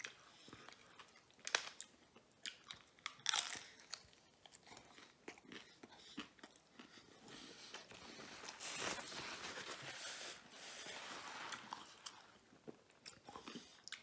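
Crunchy bites and chewing of a Jack in the Box taco, with its deep-fried hard shell cracking in short snaps. Near the middle there is a longer stretch of rustling as the paper wrappers are handled.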